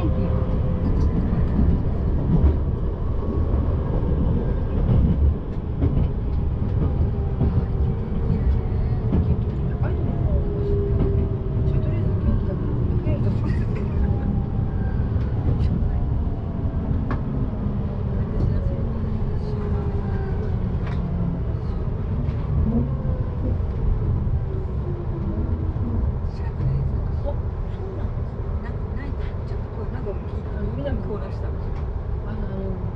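Inside an electric train braking to a stop: a steady rumble of wheels on the rails, with a motor whine of several tones that falls slowly in pitch as the train slows.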